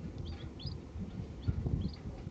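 A few short, faint bird chirps, each a quick rising note, scattered over low background noise.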